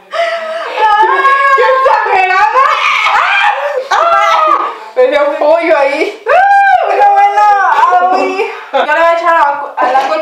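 Women's voices talking excitedly in high pitch, with some laughter, including one long drawn-out high exclamation about six and a half seconds in.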